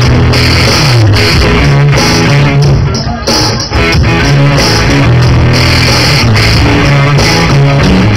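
Live rock band playing with guitar, bass and drums, recorded loud and harsh on a camera's built-in microphone, with a brief drop in the music about three seconds in.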